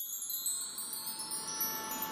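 A shimmer of wind-chime-like chimes: many high ringing tones sounded together right at the start and slowly fading, under a rising swell of noise that leads into music.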